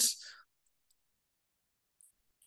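The tail of a spoken word fading out, then near silence with a few faint, short clicks, two of them near the end.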